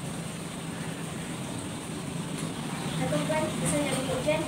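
Steady low background hum with a person's voice coming in during the last second.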